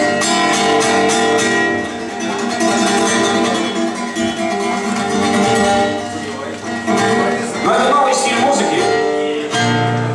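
Acoustic guitar strummed and picked steadily, heard live through the stage sound system, with a man's voice briefly over it about eight seconds in.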